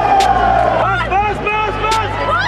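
Voices making short calls that rise and fall in pitch from about a second in, over a steady low bass. Two sharp clicks, one near the start and one near the end.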